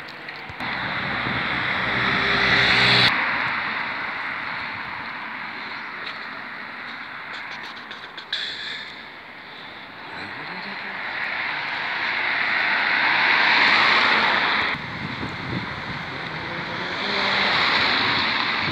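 Road traffic: cars passing close by on a town street, their noise swelling up and falling away several times, loudest about three seconds in and again near the middle and the end.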